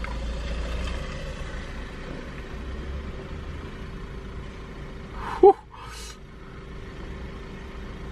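Steady low background rumble, with one short exclamation falling in pitch about five and a half seconds in, followed by a breathy exhale.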